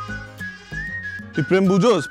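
A high, thin whistled tune that glides upward and then holds, over a soft low music bed; a man speaks a single word over it near the end.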